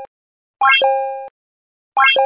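Animated subscribe-button sound effect: a quick rising run of bright notes that ends in a held two-note chime, fading over about half a second. One plays in full just after half a second in, the tail of the one before ends at the start, and the next begins at the very end.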